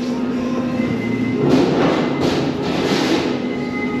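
Background music playing in a busy indoor hall over a steady general hum. A louder patch of hissing noise runs through the middle.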